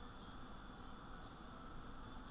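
Quiet room tone: a steady faint hiss and low hum from the recording setup, with one faint click a little over a second in.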